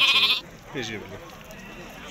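A sheep gives one loud, high bleat lasting about half a second at the very start, followed by quieter men's voices.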